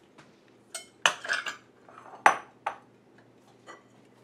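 Glass bowls and metal kitchen utensils clinking and knocking as they are moved about on a countertop: a few sharp clinks with short ringing, a cluster about a second in and the loudest near two and a quarter seconds.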